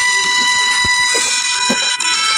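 A steady high-pitched tone with many overtones, held without a break.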